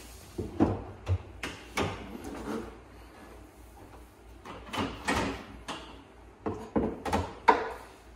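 Hood of a 2012 Ford Mustang Boss 302 Laguna Seca being unlatched and raised by hand: a series of sharp clicks and clunks of the latch and hood metal.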